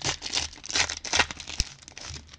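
Foil wrapper of a trading card pack crinkling and tearing as it is pulled open by hand, with one sharp click about one and a half seconds in.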